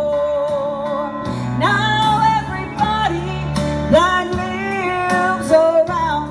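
Southern gospel song performed live: a woman sings lead into a microphone over instrumental accompaniment with guitar. A long held note fades about a second in, then new sung phrases begin.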